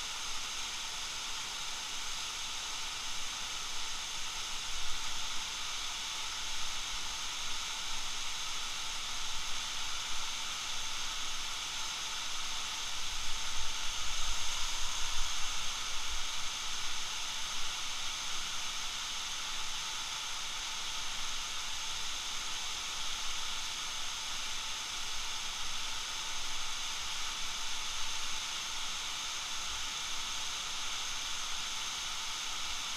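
Big Bradley Falls pouring over a rock face: a steady rushing hiss of falling water. It swells a little around the middle with some low rumbles.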